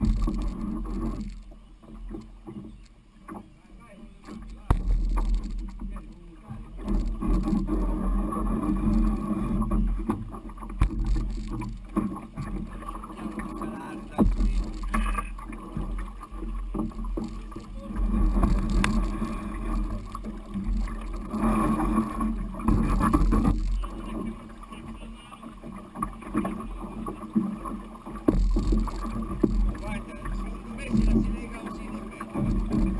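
Aluminium canoe hull being walked through a shallow, rocky river: the metal hull scrapes and knocks on stones, with shallow water running around it. The noise swells and fades unevenly, with scattered sharp knocks.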